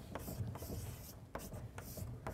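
Chalk writing on a blackboard: faint scratching strokes, with a few light taps as the chalk meets the board.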